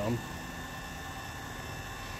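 Electric linear actuator of a solar tracker running steadily, a faint even motor hum as it drives the panel.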